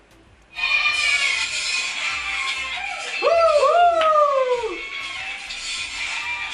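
Live concert recording starting up after a brief moment of quiet: music and crowd noise, with a voice calling out in two long falling cries about halfway through.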